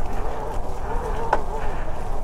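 Talaria X3 electric dirt bike's motor whining faintly as it rides along a woodland trail, over a steady low rumble.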